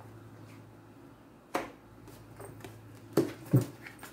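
A deck of tarot cards handled over a table: a sharp click about a second and a half in, then two knocks close together near the end, over a faint low hum.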